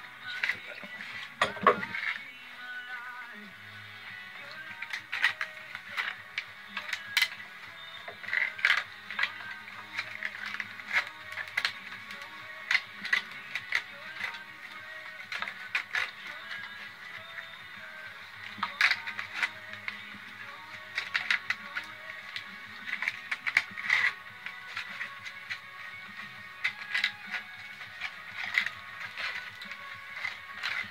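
White oak splits being woven through stiff basket ribs: irregular sharp clicks and scrapes of the wood as the split is pulled and pushed between the ribs. Music plays faintly underneath.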